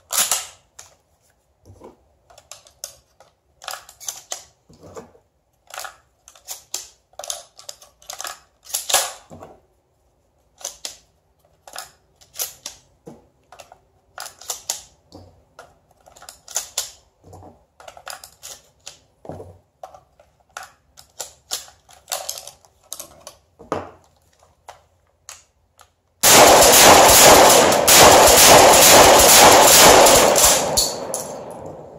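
Kel-Tec KSG pump-action 12-gauge bullpup shotgun fired in a fast timed string: sharp shots and pump clacks about once a second. About four seconds before the end, a loud, dense, unbroken rattle takes over.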